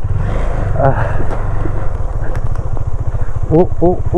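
Motorcycle engine running under throttle on a rough road, a steady rapid firing beat throughout. Near the end a rider's voice starts a shaky, repeated "o-o-o".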